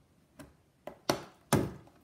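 Four short clicks and knocks from a doll's cardboard-and-plastic display box being handled and opened, the last two the loudest.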